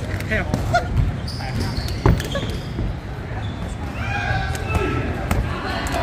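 Blows landing in a fight, dull thuds at uneven intervals with the hardest about two seconds in, under shouted coaching voices.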